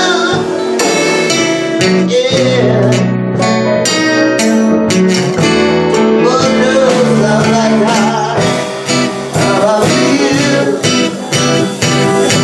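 Live blues performance: a red acoustic-electric guitar is fingerpicked and strummed while a man sings in wavering, drawn-out phrases, with grand piano accompaniment.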